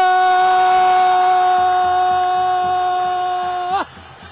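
An Arabic football commentator's voice holds one long, steady shouted vowel for about four seconds as a goal goes in, then breaks off with a quick upward flick just before the end.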